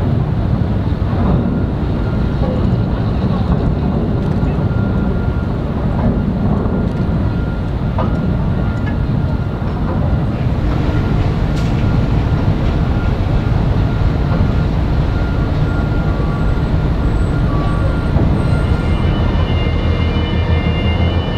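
Steady low mechanical rumble of port machinery and ship engines, with faint steady whine tones and a few light clicks over it.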